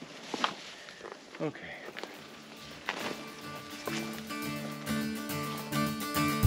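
Light clicks and scuffs of someone climbing over a rusty steel rebar grid. About two seconds in, background music fades in and grows louder toward the end.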